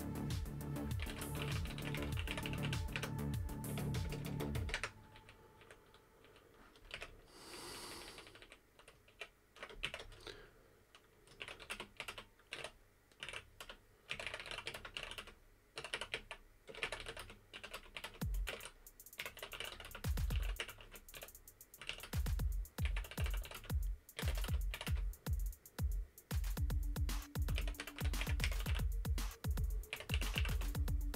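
Typing on a computer keyboard in quick runs of keystrokes. Background music with a heavy bass beat plays under it for the first few seconds, drops away, and comes back loud about two-thirds of the way in.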